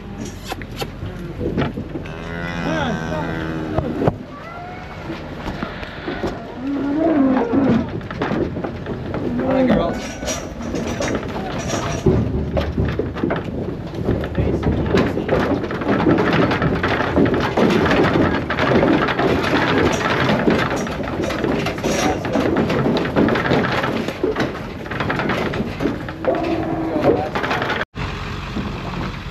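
Dairy-beef cattle mooing and bawling several times, with a long stretch in the middle of hooves clattering and scraping on an aluminum stock trailer's floor and gate as the animals move through it.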